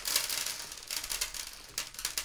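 Handfuls of small LEDs shaken out of a plastic bag, pattering and skittering onto a wooden tabletop in a dense run of light clicks.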